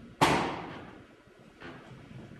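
A single sharp knock about a quarter second in, fading quickly with a short room echo. A much fainter tap comes near the end.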